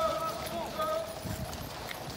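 Hooves of cavalry horses clip-clopping on a gravel parade ground, with voices over them.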